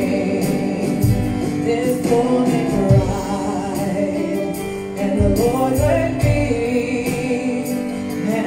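Gospel worship song: a woman singing into a microphone with electronic keyboard accompaniment.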